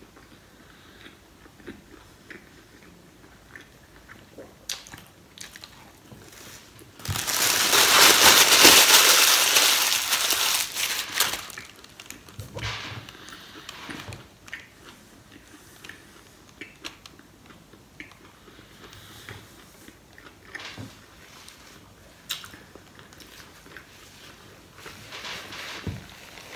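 A person chewing and biting a sandwich, with small mouth clicks. About seven seconds in, loud crinkling of the paper sandwich wrapper for about four seconds. Paper napkin rustling near the end.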